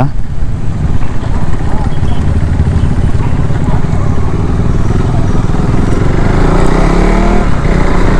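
Motorcycle engine running as the bike is ridden along a road, heard from the rider's camera. Near the end the engine note rises as it accelerates.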